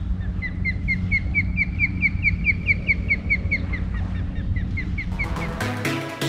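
A bird calling a long, rapid series of short, even chirps, about four or five a second, over a steady low hum. Electronic music comes in near the end.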